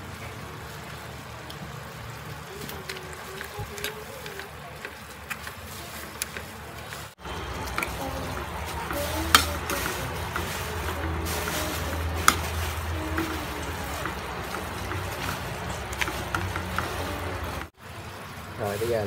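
Hairy cockles and shrimp sizzling as they are stir-fried in a steel wok, almost dry, with a metal ladle scraping and clinking against the pan. The ladle gives scattered sharp clicks, the loudest about halfway through.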